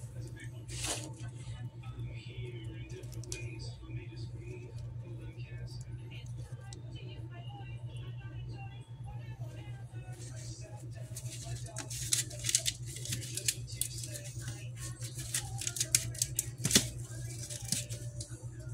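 Crisp, cooked turkey bacon being snapped and broken apart by hand: a run of sharp crackling snaps in the second half, over a steady low hum.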